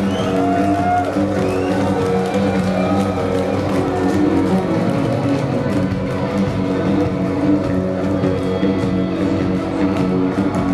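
A live rock band playing, with electric guitar over held, sustained chords.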